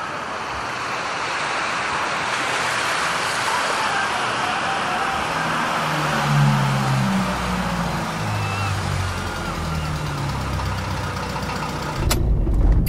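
Ambient intro to a progressive rock track: a swelling wash of noise like distant traffic, with low held notes coming in about halfway through.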